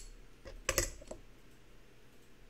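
Silver dollar coins clicking against one another as they are handled and set down: a few light clicks, the loudest a quick cluster just under a second in.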